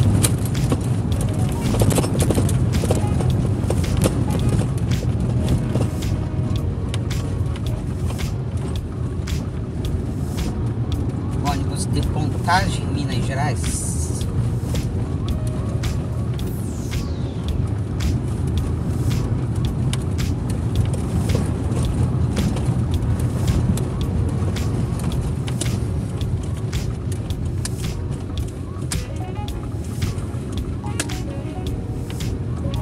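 Inside a Fiat Uno Mille driving slowly over block-paved streets: steady low engine and tyre rumble with many small rattles and knocks as it rolls over the paving.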